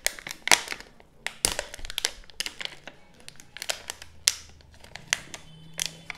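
Clear plastic blister pack and film wrap crinkling and crackling as it is pulled apart by hand to free a fountain pen, in irregular sharp crackles throughout.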